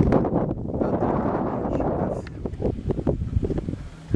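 Wind buffeting the camera microphone, heaviest for the first two seconds, then easing into a scatter of soft knocks and rustles.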